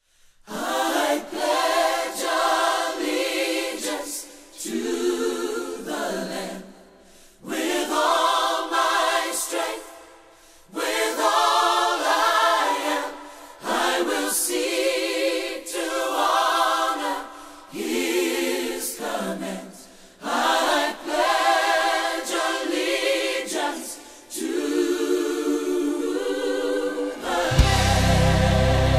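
A choir singing unaccompanied in a string of phrases of a few seconds each, with short breaths between them. Just before the end, backing music with a deep bass comes in.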